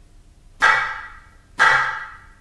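Two sharp percussion strokes about a second apart, each ringing briefly before fading: a count-in on the beat, just ahead of a bar of the masmudi saghir rhythm.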